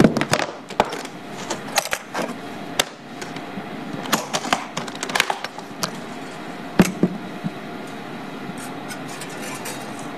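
Hard-shell guitar case being opened and handled on pavement: a run of sharp clicks and knocks from its metal latches and lid, the loudest right at the start and about seven seconds in.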